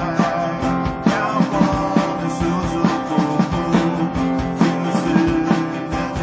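Live rock band playing amplified through a PA: a drum kit keeping a steady beat under electric and acoustic guitars.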